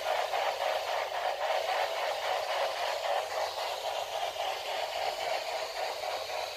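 Steady hiss of static, like an untuned radio, with a faint fast flicker running through it.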